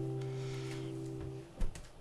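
Acoustic guitar chord ringing out and fading away after a strum. About one and a half seconds in there is a short soft knock, and the strings fall quiet.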